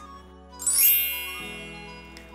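A bright chime sound effect about half a second in: a quick upward sparkle of tinkling tones that then rings out and fades over about a second.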